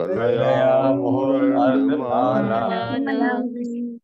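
A man chanting a line of a Sanskrit verse in a low, steady, drawn-out recitation tone, in one continuous breath that stops abruptly at the end.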